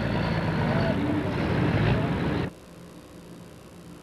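Red International Harvester pro stock pulling tractor's diesel engine running loud on the track, with a track announcer's voice over it. It cuts off suddenly about two and a half seconds in, leaving a faint steady hum.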